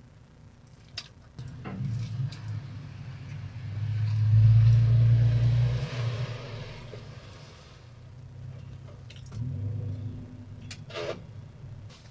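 A car drives past outside: a low engine-and-road rumble that swells to a peak about halfway through and fades away. A second, fainter rumble follows near the end.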